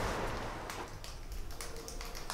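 Steady outdoor background noise fades out, then a quiet room with a few faint taps of footsteps on a hard floor.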